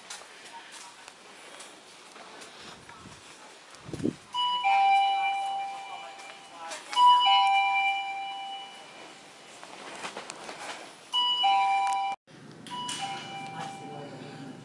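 Two-tone electronic ding-dong chime, like a door entry chime, sounding four times, each a higher note followed by a held lower one. A low thump comes just before the first chime.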